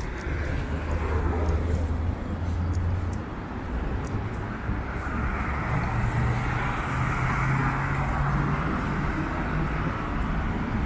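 Steady traffic on a wide city avenue: cars driving past on a wet, slushy road with a continuous hiss of tyres. Under the hiss there is a low engine drone for the first three seconds, and from about six seconds in another, slightly higher one.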